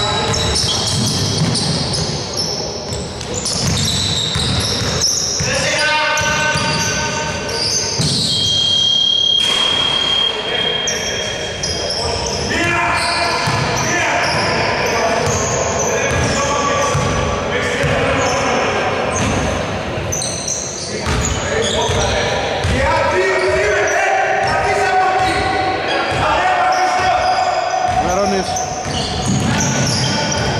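Basketball being dribbled on a wooden gym floor, its repeated bounces echoing in a large hall, mixed with players' and bench voices.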